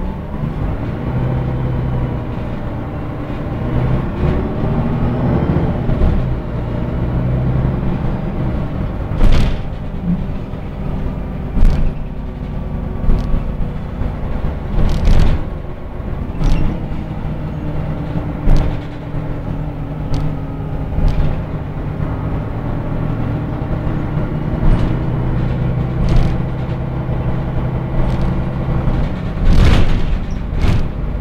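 City bus engine and drivetrain heard from inside the passenger cabin while the bus drives, a steady low rumble whose pitch rises twice as the bus accelerates. Sharp knocks and rattles from the bus body and fittings come every few seconds.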